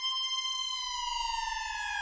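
Experimental electronic music: a single held high tone with a stack of overtones, gliding slightly down in pitch about a second in, over a faint low rumble.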